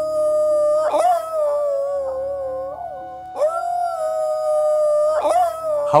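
Indian wolf howling: two long howls, each rising quickly, holding a steady pitch and sagging slightly at the end, the second starting about three seconds in. Soft background music plays underneath.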